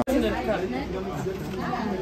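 Background chatter: several people talking at once, no single voice standing out, over a steady low hum.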